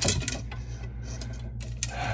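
Arrows being handled and sorted on a workbench: light clicks and rattles, with a few sharper clicks at the start and again near the end.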